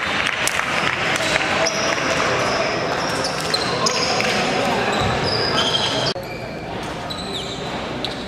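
Live indoor basketball-court ambience: players' voices, short high sneaker squeaks on the hardwood floor and a basketball bouncing, echoing in the hall. The sound level drops abruptly about six seconds in.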